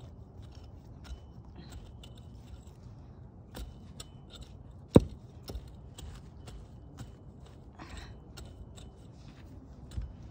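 Hand-weeding in a garlic bed: a string of short snaps, clicks and rustles as weeds are pulled from the soil, with one sharp knock about halfway through.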